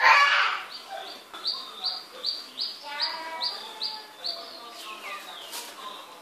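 A bird chirping a run of about ten short, high notes, roughly three a second, with faint voices behind it. A loud, noisy burst about half a second long comes right at the start.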